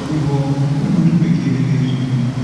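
A man's voice speaking into a handheld microphone.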